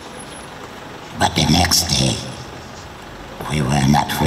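Speech: a voice speaking in two short stretches, about a second in and again near the end, over a steady low background rumble.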